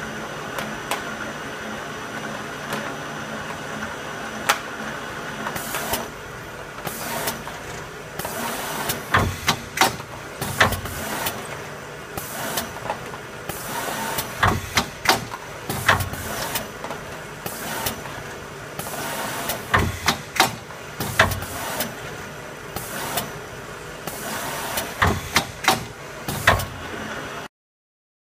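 Automatic side-seal film wrapping machine running, a steady mechanical drone with faint held whining tones. Over it come short bursts of hiss and repeated clusters of sharp clacks as the tubs pass through.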